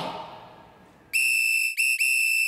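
The last note of a pop dance track dies away. About a second later a steady, high whistle tone sounds, breaks off briefly and comes back.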